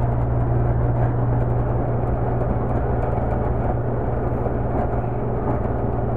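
Vacuum pump on a brake-booster test bench running with a steady hum, holding the line at about 21 inches of vacuum.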